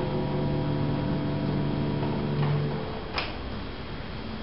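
The last notes of an upright piano fading away and stopping a little under three seconds in, followed by a single sharp click, over a steady hiss.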